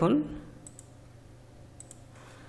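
Two faint computer mouse clicks, about a second apart, as a spreadsheet cell is selected.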